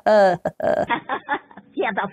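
A woman's voice, laughing, at the start. From about a second in comes a quieter, thinner-sounding voice with the high end cut off, like sound from a low-quality phone video.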